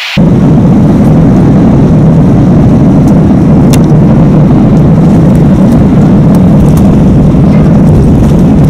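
Jet airliner landing, heard from inside the cabin: a loud, steady rumble of the engines and the wheels rolling on the runway.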